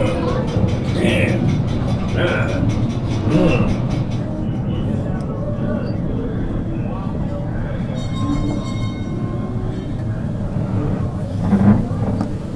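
Mine ride train rumbling steadily along its track through the tunnels, with indistinct animatronic show voices and music playing over it for the first few seconds and a short louder burst near the end.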